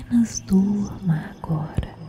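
A woman's voice speaking a few words, missed by the transcript, over a steady ambient music drone; the voice stops near the end.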